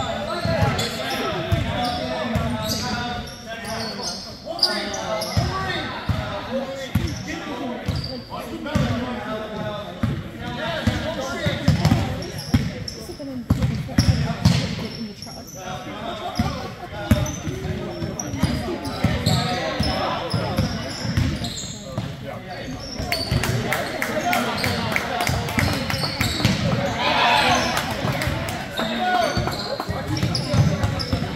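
A basketball being dribbled on a hardwood gym floor in repeated sharp bounces during live play, mixed with players and spectators talking and calling out in a large gym hall.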